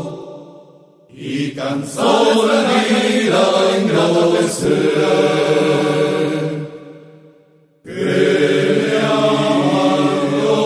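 Rondalla music: an ensemble of voices holds wordless chords over guitars. The sound fades away at the start and returns about a second in with a few sharp plucked strums. It fades out again around seven seconds and comes back suddenly near eight seconds.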